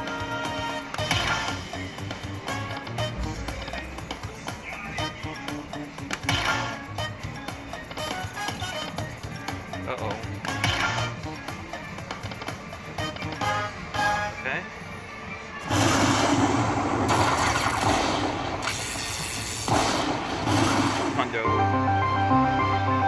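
Aristocrat Lightning Cash slot machine playing its free-spin bonus: electronic game music and jingles with short clicks as the reels stop. In the last few seconds a louder rushing noise comes up.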